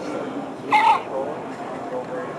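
PARO robotic baby harp seal giving one short cry, its recorded seal-pup call, about three quarters of a second in.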